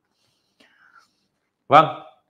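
A pause of near silence with a faint soft sound partway through, then a man speaks a single word near the end.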